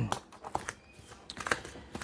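Scissors cutting into a cardboard box while the cardboard is handled: a scattering of light, irregular clicks and crackles.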